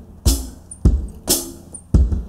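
One-man-band blues beat: a foot-played kick drum alternating with a bright cymbal hit, about two strikes a second, with a faint hollow-body electric guitar underneath.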